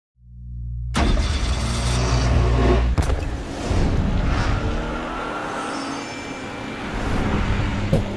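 Sound-effect intro of a music video: a deep rumble swells in over the first second with dense noise above it. A sharp hit comes about three seconds in, then thinner hissing noise with a few faint high tones until the song's beat starts at the end.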